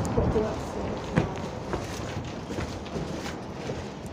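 Wind rumbling on a phone's microphone, easing as the doors close it out on entering the building, with a few footsteps and a small click about a second in.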